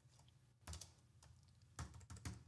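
Faint computer keyboard typing: a short cluster of keystrokes just under a second in and a few more near the end, otherwise near silence.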